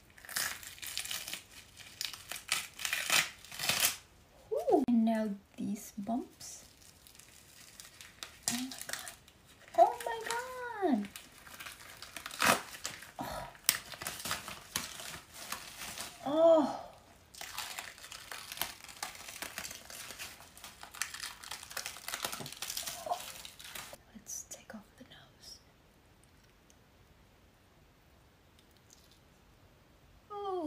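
Special-effects makeup prosthetics and hair pieces being peeled and pulled off skin, in irregular bursts of crinkling and tearing. A few short wordless vocal sounds come in between, and the peeling stops about six seconds before the end.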